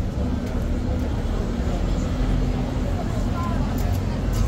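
Steady low rumble of city road traffic, with a vehicle's engine hum standing out in the first couple of seconds and faint voices of people around.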